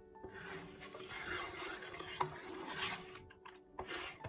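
A wooden spoon stirs sugar into strained cranberry juice in a pan. It makes grainy scraping strokes along the pan bottom, with a sharp knock of the spoon against the pan about two seconds in.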